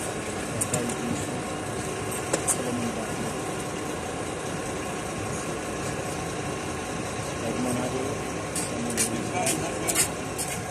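Team coach's diesel engine idling with a steady hum, under scattered voices of people around the bus. A few short sharp clicks come near the end.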